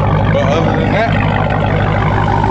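Dodge Challenger SRT Hellcat Redeye's supercharged 6.2-litre HEMI V8 idling steadily.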